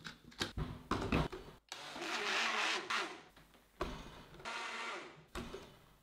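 Personal bullet-style blender running in two short bursts of about a second and a half each, blending milk and cocoa powder. Before the first burst come a few plastic clicks as the cup is fitted to the base.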